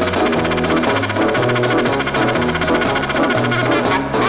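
Instrumental 1960s TV-theme music from a budget LP, with brass and drums over a stepping bass line and a fast, even beat.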